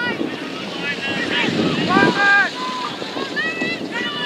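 High-pitched young voices shouting and calling across a rugby pitch around a ruck, with wind rumbling on the microphone.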